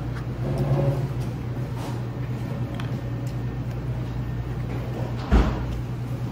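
Steady low hum of restaurant room noise with faint clatter, and a single sharp thump a little after five seconds in.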